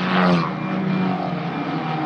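Formula 4 race cars' turbocharged four-cylinder engines running steadily at part throttle as the pack circulates behind the safety car, loudest just after the start.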